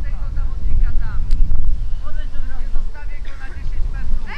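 Wind buffeting the microphone in a steady low rumble, with faint shouts and calls from players on a football pitch.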